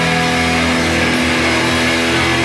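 Rock music: an electric guitar chord held and ringing steadily over a wash of cymbals.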